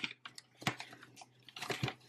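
Large clear plastic bag of popcorn kernels being gripped and worked open at its top: a few faint short crinkles and rustles.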